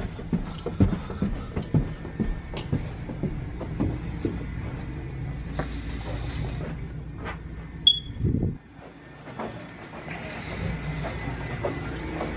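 Footsteps going down a staircase, a step about every half second, over the low rumble of a handheld camera being carried; a brief high squeak about eight seconds in, after which the rumble drops away.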